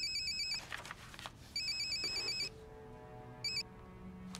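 Mobile phone ringing with a rapid electronic trill, three times: once at the start, a longer ring about a second and a half in, and a brief one near the end.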